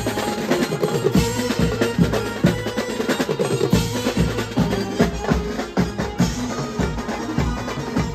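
Live banjo-party drumming: several drummers hammer out a fast, steady beat on stick-played snare-type drums and a large bass drum, with cymbals, over a held melody line.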